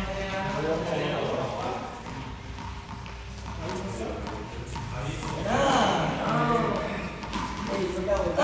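Voices of people talking in a large room. There is a quieter stretch in the middle.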